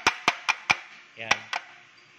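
Four quick, sharp taps of a hard plastic printer paper tray, about four a second, knocking loose paper fibres and dust after brushing.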